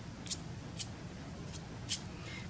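Offset palette knife spreading thick paint for impasto: about four short scraping strokes of the metal blade through the paint, roughly one every half second.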